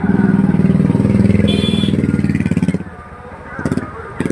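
A motorcycle engine running loud and close, then fading away about three seconds in. A brief high tone sounds over it midway.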